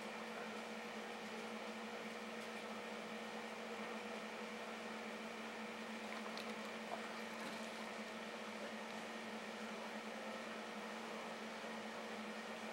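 Steady electrical hum of running aquarium equipment, a constant low buzz over an even hiss, with a few faint ticks.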